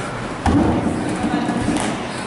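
A single sharp thud about half a second in, as an athlete's feet land from a jump over a wooden plyo box onto the rubber gym floor, followed by a raised voice for about a second.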